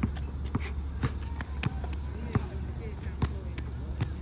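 A basketball being dribbled on an asphalt court: a string of sharp bounces, roughly one every half second to second.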